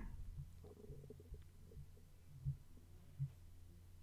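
Faint steady low hum with a few soft low thumps spaced under a second apart, starting about halfway through.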